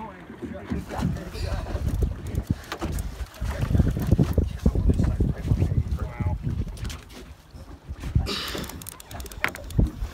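Wind buffeting the microphone and water washing against the hull of a small boat at sea, with scattered knocks and clicks from gear on deck.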